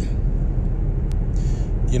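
A steady low rumble runs through the pause in the talk. Near the end comes a short throat-clear.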